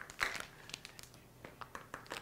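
A few faint clicks and crinkles as plastic measuring cups and a plastic bag of baking ingredients are handled.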